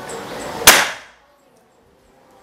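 A single shot from a PCP bullpup air rifle, a locally made copy of the FX Impact MK2: one sharp crack about two-thirds of a second in, dying away within half a second. The pellet clocks 929 on the chronograph it is fired over.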